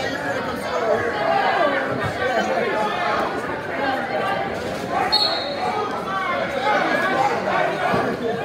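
Many voices overlapping, spectators and people at mat side talking and calling out, carrying in a large gymnasium. A brief high squeak sounds about five seconds in.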